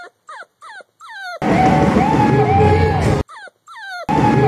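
A puppy crying in short, high whines that fall in pitch, three of them. About a second and a half in, a burst of live rock band music cuts in for nearly two seconds. Two more falling whines come near the end.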